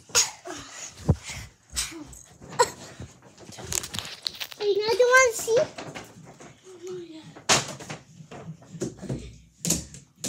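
A young child's voice making wordless sounds with a rising and falling squeal about five seconds in, among repeated short knocks and bumps close to the microphone.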